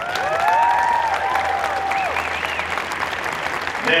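A large audience applauding, with several whooping cheers rising above the clapping in the first two seconds.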